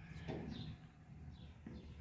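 Faint bird calls over a quiet, steady low hum.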